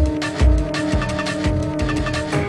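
Mid-1990s jungle drum and bass played from vinyl records: fast, busy breakbeat drums with deep bass hits under a sustained synth chord.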